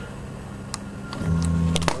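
A CNC machine's axis drive motors start up about a second in as the machine begins its homing run, giving a steady low motor hum. A few sharp clicks come over it.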